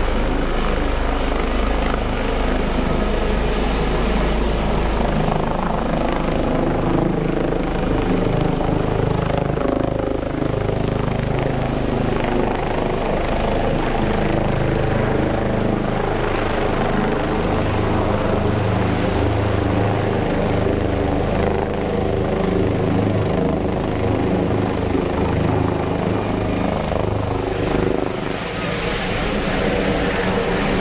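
Air ambulance helicopter flying low overhead, its engine and rotor sound loud and steady.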